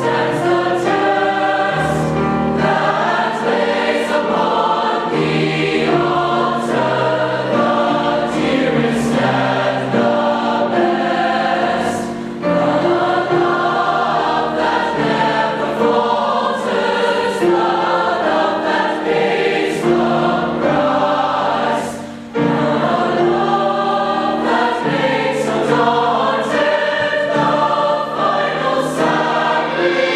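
Large combined mixed choir singing in full harmony, the sound breaking briefly between phrases about 12 and 22 seconds in.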